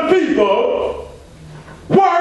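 A man's voice in loud, short exclamations with sliding pitch and no clear words. It drops away about a second in and comes back loudly right at the end.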